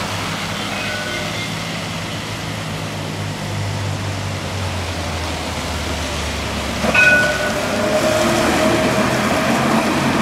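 Electric tram approaching and passing on wet tracks: a steady low hum under the hiss of wet traffic, a sudden clang with a brief ringing tone about seven seconds in, then a steady motor whine as it draws alongside and the sound grows louder.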